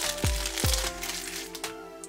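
Background music with deep kick drums that drop in pitch. Over it, for about the first second, comes the crackling crinkle of the thin plastic wrapper being peeled off a processed cheese slice.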